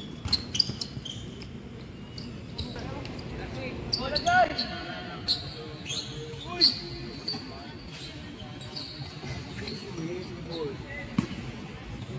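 A basketball game on an outdoor hard court: a ball bouncing and knocking in sharp, irregular thuds, with players' voices calling out now and then.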